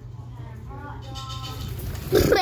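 A faint, drawn-out voice sound begins a little under a second in, over a low steady hum, much quieter than the child's talk around it.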